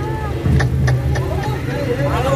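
Sundanese reak procession music: hand-held dog-dog frame drums struck in irregular sharp beats over a low steady drone, with a wavering high melody line at the start. Crowd voices are mixed in.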